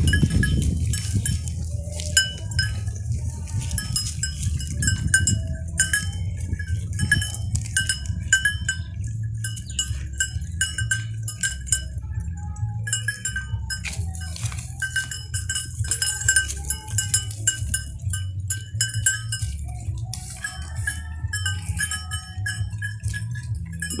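A flock of Dorper sheep feeding close by, with a small bell clinking again and again over a steady low rumble.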